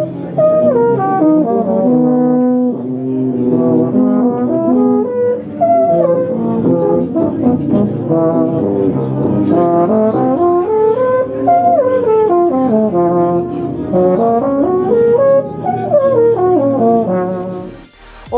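Yamaha YEP 642 compensating euphonium played solo: a long held note early on, then quick runs and leaps rising and falling through the range. It is played to test the horn's accuracy, response and centring across the registers.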